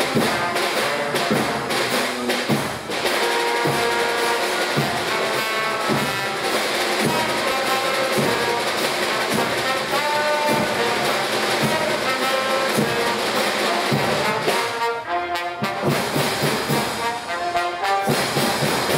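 Live marching band of brass and drums playing: a trombone out front with horns, trumpet and tuba, over snare and bass drums keeping a steady beat.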